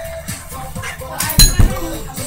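Pop music with a beat plays throughout, broken about one and a half seconds in by two loud thumps close together: a child landing on a carpeted floor after jumping off a couch with a teddy bear.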